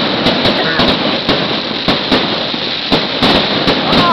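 Fireworks going off close by: a rapid, irregular string of sharp bangs and crackling, with aerial shells bursting overhead.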